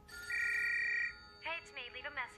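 Answering machine starting message playback: a steady electronic beep a third of a second in, lasting under a second, then a short run of chirping electronic sounds near the end. Soft background music lies underneath.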